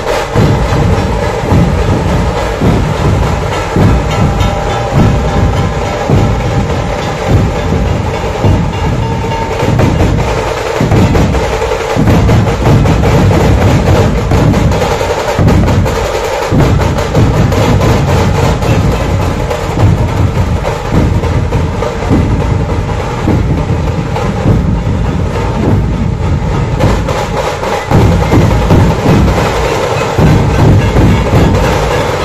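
A Puneri dhol-tasha troupe playing: many large barrel-shaped dhol drums struck with sticks in a loud, continuous, dense rhythm.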